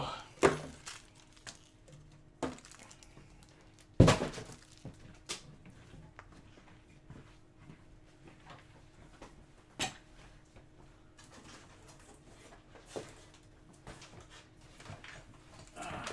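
Scattered knocks and clicks of things being handled in a small room, the loudest a sharp knock about four seconds in, over a faint steady hum.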